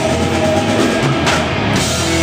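Rock band playing live and loud: electric guitars, bass guitar and drum kit.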